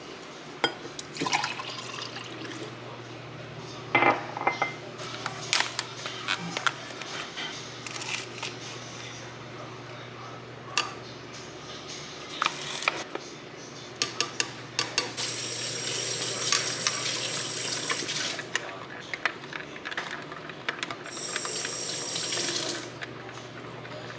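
Making a drink in a glass: liquid poured and filling the glass, then a metal spoon tapping and stirring against the glass, with scattered clinks and two longer stretches of spoon scraping and ringing in the second half, over a steady low hum.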